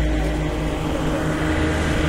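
A vehicle engine idling nearby, a steady low rumble.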